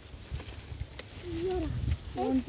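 Uneven low rumble of wind and handling noise on a phone microphone, with a faint voice-like call rising and falling about a second and a half in.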